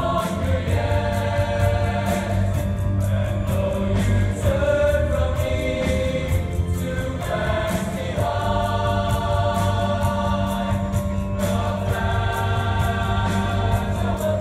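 Large mixed choir singing held, slowly changing chords over instrumental accompaniment with a steady low bass and a regular beat.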